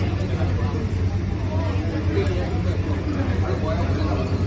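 Indistinct background chatter of people talking in a restaurant over a steady low hum.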